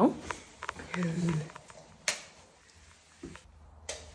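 A few small clicks and knocks, the sharpest about two seconds in, with a short murmured voice about a second in.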